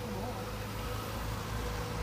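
A minibus and a motorcycle driving slowly past close by: a steady low engine rumble with a faint steady drone over it.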